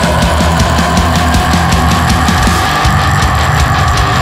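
Heavy metal band playing at full volume: fast, regular drumming under one long held high note that bends slightly.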